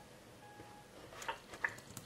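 Faint countdown beep from Mac Photo Booth on the laptop, one short steady tone: the last beat of the 3-2-1 countdown before video recording begins. A few soft clicks follow in the second half.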